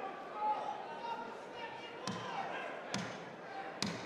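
Three sharp knocks about a second apart in the second half, each with a short echo in the hall, over steady crowd voices at a boxing ring.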